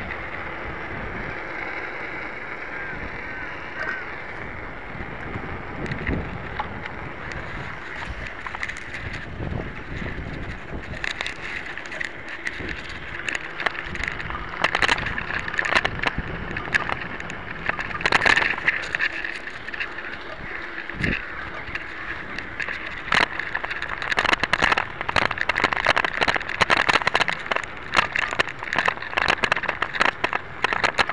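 A steel-frame mountain bike riding over a rough dirt path: continuous tyre and wind noise with frequent rattles and knocks as the bike goes over bumps. The rattling gets much busier in the last few seconds.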